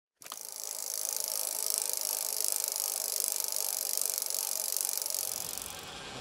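Bicycle freehub ticking rapidly and evenly as the rider coasts, a fast high-pitched ratchet buzz that fades near the end.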